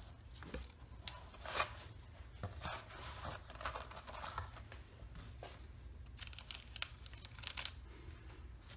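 Faint handling noise: scattered light clicks and short rustles as wooden colored pencils are taken from their cardboard box and set into a plastic-lined form. One louder rustle comes about a second and a half in.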